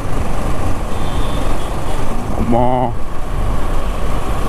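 Steady engine and road noise from a motorcycle being ridden at about 40 km/h in traffic, with wind rumble on the microphone. A man's voice chants a short 'mau mau' about two and a half seconds in.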